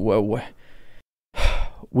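A man's voice trails off on a drawn-out filler sound, then after a short silent gap comes an audible breath in just before he speaks again.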